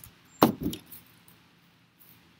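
A single sharp knock or bump about half a second in, with a brief fainter rattle after it, then only quiet background.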